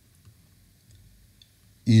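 A few faint, scattered clicks and taps of a stylus or pen writing on a tablet, over a low room hiss.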